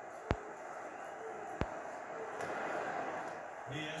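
Ballpark crowd murmur heard through a TV's speaker, with two short sharp clicks about a second and a half apart near the start.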